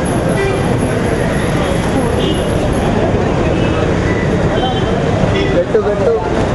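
Crowd hubbub: many people talking at once in a steady, loud murmur, with no single clear voice.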